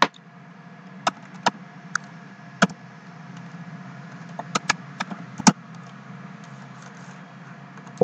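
Computer keyboard keystrokes and mouse clicks: about ten short, sharp clicks at irregular intervals, over a steady low hum.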